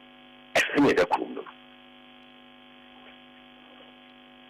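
Steady faint electrical hum with many even overtones, unchanging in pitch, with a short spoken word about half a second in.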